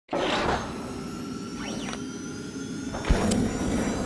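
Channel-intro logo sound effects: a whoosh right at the start, sweeping swishes, and a deep thump about three seconds in as the logo lands.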